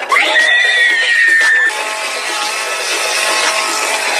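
A person screaming: one high, held shriek that slides slightly down in pitch for about a second and a half, followed by steady music.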